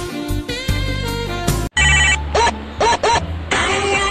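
Jazzy background music with horns cuts off suddenly, and a mobile phone ringtone starts, playing in short repeated bursts: an incoming call.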